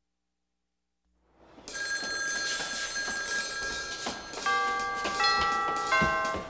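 A telephone bell ringing, starting about a second and a half in after silence. More pitched tones join about four and a half seconds in.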